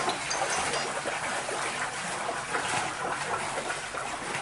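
Feet wading through shallow floodwater, with continuous sloshing and splashing.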